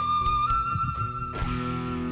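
Instrumental break in a Turkish folk song played live: a flute holds one long note that steps up slightly about half a second in, over the band's steady accompaniment.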